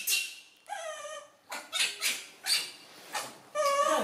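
Baby macaque crying: short wavering, whimpering calls with harsh noisy squeals between them, and a louder cry near the end.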